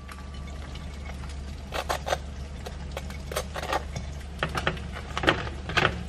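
Table knife spreading cream cheese on a toasted bagel: scattered short scrapes and light taps, about ten in all, over a steady low hum.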